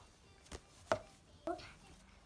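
Three light taps, spaced about half a second apart, over a quiet background.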